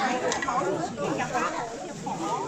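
Several people talking at once: indistinct chatter.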